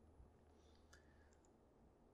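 Near silence: room tone with a couple of faint clicks, one just after the start and one about a second in.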